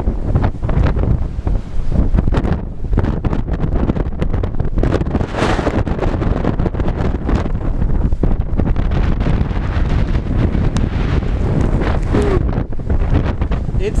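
Strong, gusting wind buffeting the camera microphone: a loud, continuous rush, heaviest at the low end, that swells and eases with each gust.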